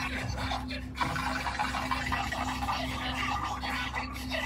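Car radio playing strange, choppy garbled noises over a steady low hum, busier from about a second in.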